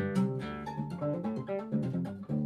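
Nylon-string classical guitar playing a quick run of single notes, sounded by alternating right-hand taps and pull-offs on the fingerboard with left-hand hammer-ons rather than ordinary plucking.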